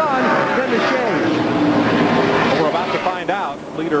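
Indistinct voices talking over the steady drone of stock-car engines on track.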